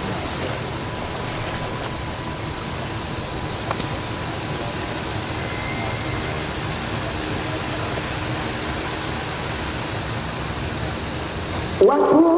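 Steady background noise with faint low voices and one small click about four seconds in. A chanting voice begins at the very end.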